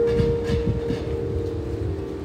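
Harp strings left ringing from the last notes, fading slowly, under the low rumble of a passing road vehicle. No new notes are plucked.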